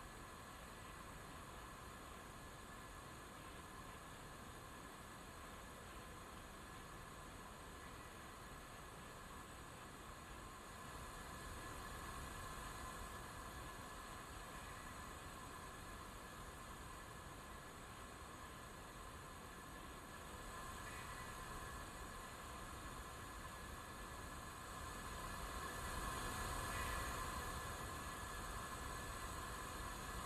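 Faint, steady hiss with a light hum, the ambient sound of a launch-pad feed during the countdown. It swells slightly a few times, most noticeably near the end.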